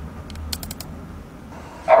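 A quick run of five or six light clicks at a computer, about half a second in, as the video is started, over a faint low hum.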